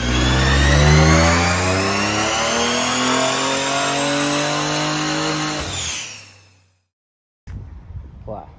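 Ford Ranger Raptor's 3.0-litre twin-turbo V6 at full throttle on a chassis dyno: one steady pull with the pitch rising through the rev range for about five and a half seconds, then cutting off and dying away.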